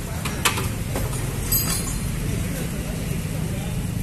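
Kubota ZK6 walk-behind tractor's single-cylinder engine idling steadily, with a couple of faint clicks about half a second in.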